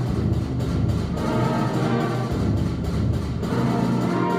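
Sixth-grade concert band playing sustained chords, with clarinets and flutes, and two low drum strokes about two seconds apart.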